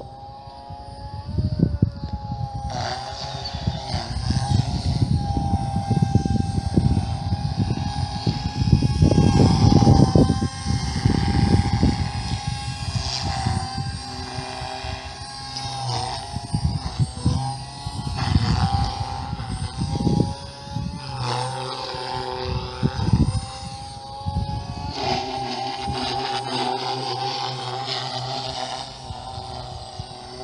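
OXY 3 electric RC helicopter in flight: a steady high whine from its motor and rotor head that shifts in pitch several times as it manoeuvres, over a gusty low rumble that is strongest in the first half.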